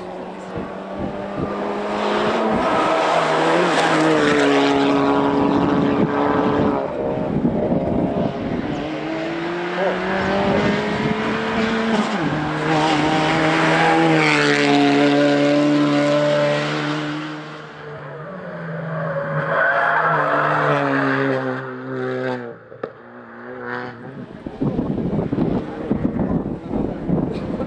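Suzuki Swift Sport rally cars' 1.4-litre turbocharged four-cylinder engines revving hard on a tarmac stage, the pitch climbing and then dropping sharply at each gearshift. There are two long loud runs, the engine note falls away around the middle and again briefly near the end, then another car comes in revving.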